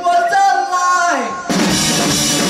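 Live rock band in a stop-time break: the drums and bass drop out, leaving a lone held note that slides down in pitch, then the full band with drum kit crashes back in about one and a half seconds in.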